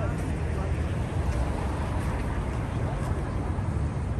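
Busy city street noise: a steady low rumble of traffic moving along a multi-lane road, with indistinct voices of passers-by.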